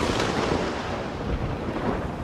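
Thunder from a nearby lightning strike: a rumble that starts suddenly and slowly fades.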